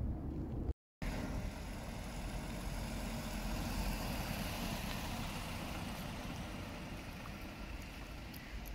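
After a brief cut to silence, a car running along a wet, slushy street: steady engine and tyre noise that slowly fades toward the end.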